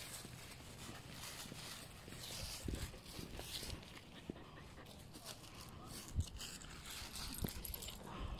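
Footsteps and rustling on a leaf-covered dirt trail, with dogs moving about close to the microphone.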